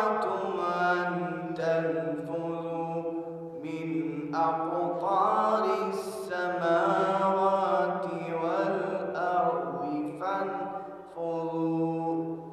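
A man reciting the Quran in the melodic Arabic chanting style, in long, ornamented phrases whose pitch glides and is held, with short pauses for breath between them.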